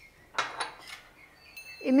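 A short clink of kitchenware about half a second in, with a brief ringing tail and a lighter click just after, as the cook handles a steel mixer-grinder jar and a small clay bowl while adding ingredients.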